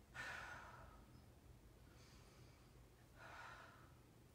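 A woman breathing audibly during a Pilates leg exercise: a louder exhale just after the start that fades over about a second, and a softer breath near the end.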